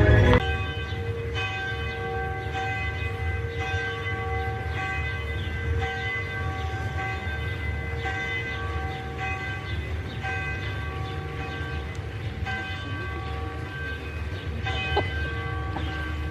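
A bell tolling steadily, about one stroke a second, each stroke ringing on into the next, over a low steady rumble. A loud passage of music cuts off just as it starts.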